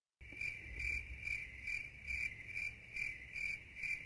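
Crickets chirping quietly in an even, pulsing rhythm: the stock sound effect for an awkward silence after a question hangs unanswered.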